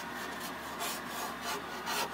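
Fingertips rubbing and scraping a layer of ice off the inside of a van's window glass, a few short strokes over a steady hiss.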